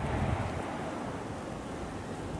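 Wind blowing across the microphone: low gusty buffeting strongest around the start, then a steady windy hiss.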